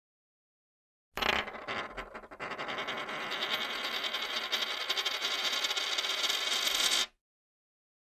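Edited-in outro sound effect with the animated logo: a sudden loud start, then about five seconds of a dense run of rapid clicks and rattles that grows brighter and stops abruptly.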